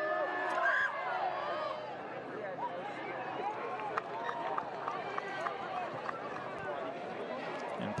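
Crowd at a rugby ground: many voices chattering and calling out over a steady background hubbub, busiest in the first couple of seconds, with a few faint sharp knocks.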